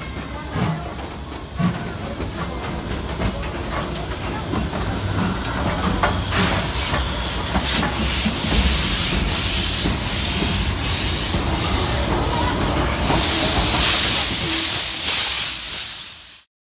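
Two steam locomotives, a C56 and a D51, pulling out slowly close by: a low rumble under hissing steam, with irregular puffs and knocks. The hiss builds from about six seconds in and is loudest near the end.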